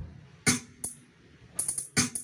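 Sound-check music played through a stacked mobile speaker system: sharp, clicky drum hits, one about half a second in and another near one second, then a quick run of hits near the end.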